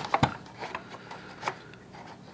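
Light handling clicks and rubbing from the plastic and metal angle adjuster of a Drill Doctor 500X drill bit sharpener as it is loosened and moved from the 118 to the 135 degree setting. There are two sharp clicks right at the start and another about a second and a half in.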